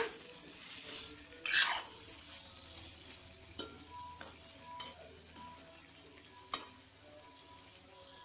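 A metal spatula stirring and scraping a dry potato, capsicum and pea sabzi around a kadai, with one louder scrape early and several sharp clinks of the spatula against the pan later. The vegetables sizzle faintly underneath as they cook without water on a low flame.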